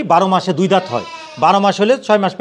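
Sheep bleating loudly several times in close succession, with one longer, quavering bleat in the middle.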